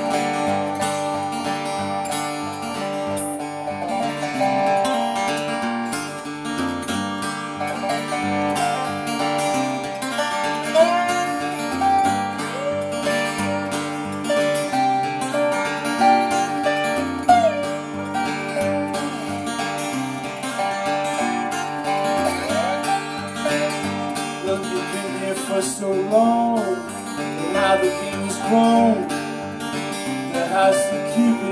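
Live instrumental duo: an acoustic guitar playing steadily under a steel guitar whose melody slides up and down between notes.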